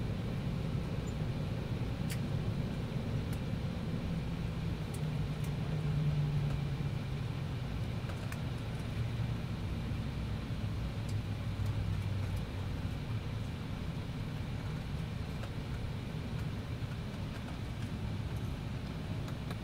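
Cabin noise of an Embraer E190 taxiing slowly: a steady low rumble from the twin turbofans at idle, with a low hum that drops in pitch partway through.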